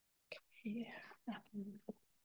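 Quiet speech: a voice says "okay" and a few soft words, after a brief click near the start.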